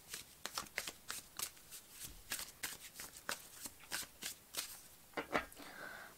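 Tarot deck being shuffled by hand: a fairly quiet run of quick, irregular card snaps and flicks.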